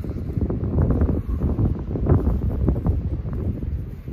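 Wind buffeting a handheld camera's microphone outdoors: an uneven low rumble that rises and falls in gusts.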